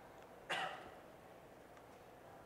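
A man coughs once, briefly, about half a second in; otherwise low room tone.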